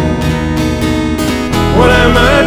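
Acoustic guitar played on its own between sung lines of a song, with a singing voice coming back in near the end.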